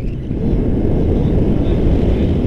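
Wind rushing over the camera's microphone during tandem paraglider flight: a loud, steady low rumble that grows a little louder about half a second in.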